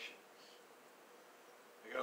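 A pause in a man's speaking: quiet room tone with a faint steady hum. The voice ends just at the start and starts again at the very end.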